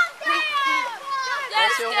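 High-pitched spectator voices shouting encouragement to racing paddlers, several voices overlapping.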